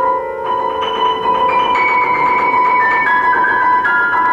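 Grand piano played solo: a high note held throughout while a slow line of single higher notes steps downward above it, a new note about every half second.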